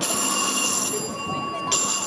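Bright metallic bell ringing, struck twice (the second strike near the end), each strike holding a long high shimmer of several steady tones.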